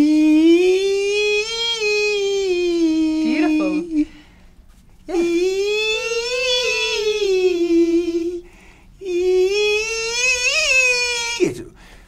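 A man's voice imitating a violin: a high, squeaky, nasal held tone sung in three long phrases of about three to four seconds each, each sliding gently up and back down in pitch like a bowed melody.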